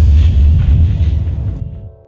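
Cinematic explosion-style boom sound effect: a loud, deep rumbling impact that fades away over about two seconds.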